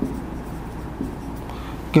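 Marker pen writing on a whiteboard: soft scratching strokes with a light tap about a second in, over a low steady hum.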